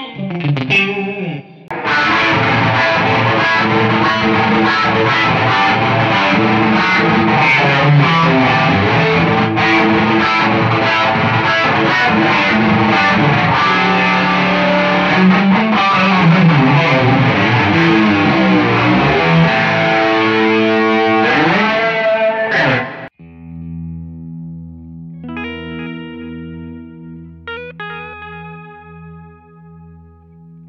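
Electric guitar (a Fender Stratocaster) played through a drive pedal and the Sidekick Jr's modulation, delay and reverb. A dense, distorted passage with a wavering, chorus-like shimmer runs for about twenty seconds and then stops abruptly. Quieter, cleaner notes follow over a low note that pulses at an even rate.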